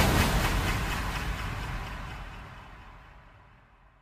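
The end of a hip-hop track fading out: its last sound dies away steadily over about three seconds.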